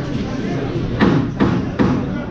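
Three quick sharp knocks about 0.4 s apart, over hall chatter.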